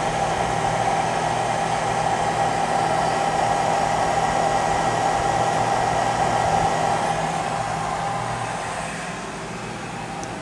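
Electric fans running steadily off a 400 W inverter on a 12 V battery: a constant whir with a steady mid-pitched tone and a low hum, getting quieter about eight seconds in.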